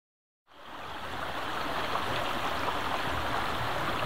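A creek running, a steady rush of water that fades in about half a second in and swells over the next second before holding even.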